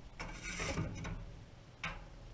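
A metal ash shovel scraping ash and coals across the floor of a wood stove insert's firebox: one rough scrape lasting about a second, then a short second scrape near the end.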